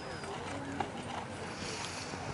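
A dressage horse's hoofbeats on the sand arena footing as it moves through its test, with faint voices in the background.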